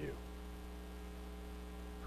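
Steady electrical mains hum, a low buzz with evenly spaced overtones, after a man's spoken word ends right at the start.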